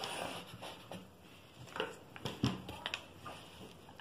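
Tailor's chalk scraping along a wooden ruler on cloth, then a few light knocks and rustles as wooden pattern rulers are moved about on the fabric.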